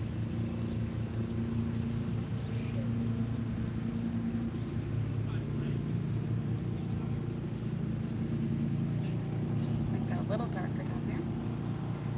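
An engine running steadily, a constant low drone holding the same pitch.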